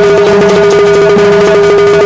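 Instrumental folk bhajan passage: harmonium holding steady notes over a dholak beat, with a quick, even clatter of wooden clappers with metal jingles.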